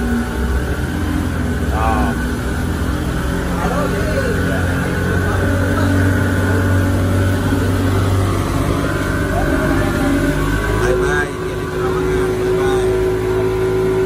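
Yamaha 200 outboard motor driving a speedboat at speed: a steady engine drone over rushing water and wind. About eleven seconds in the engine note drops and settles on a different steady tone.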